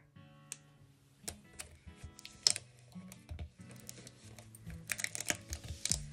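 Soft background music, with scattered light clicks and rustles of the plastic carrier sheet of heat-transfer vinyl being pressed and smoothed by hand onto a synthetic soccer ball.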